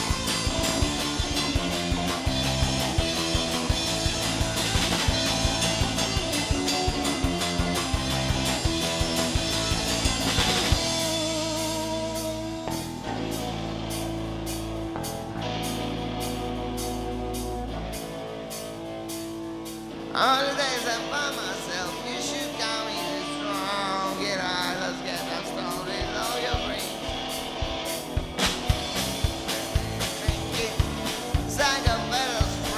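Live rock band playing: drum kit, electric guitar and bass guitar. About a third of the way in the band drops back to held bass notes under a steady ticking beat, then the full band crashes back in about two-thirds of the way through, with singing.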